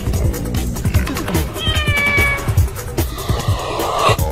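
A kitten meows once, a single slightly falling call of under a second about one and a half seconds in, over background music with a steady beat.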